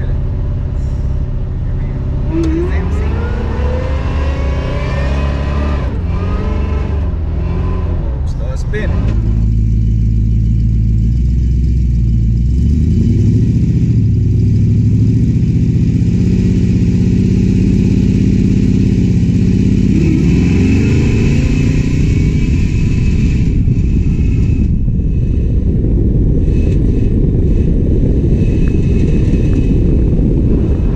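Supercharged Oldsmobile Cutlass engine accelerating hard, its pitch climbing again and again as it pulls through the gears. It is heard first from inside the cabin, then, about ten seconds in, from a camera mounted low on the car's side.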